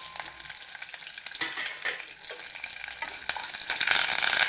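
A tempering of dals, dried red chillies, green chilli and curry leaves sizzling and crackling in hot oil in a small non-stick pan, stirred with a wooden spatula. The frying gets louder near the end.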